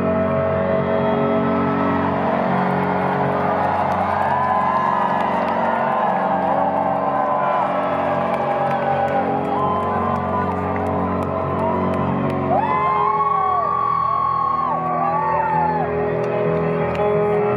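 Held ambient synth chords through a concert PA with a large crowd cheering over them. A burst of high, gliding cries rises out of the crowd about twelve seconds in.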